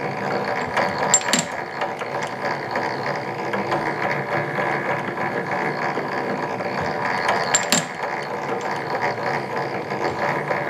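Hand-cranked model walking-beam mechanism running: a steady clatter of roller chain, spur gears and metal linkage. Two sharp metallic clicks, about a second in and again some six seconds later, fit the cam tripping the feeder's escapement lever to release a part once per orbit of the walking beam.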